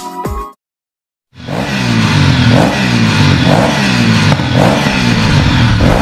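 Electronic music cuts off about half a second in. After a short gap, a motorcycle engine is revved over and over, each rev climbing in pitch for about a second, until it cuts off suddenly near the end.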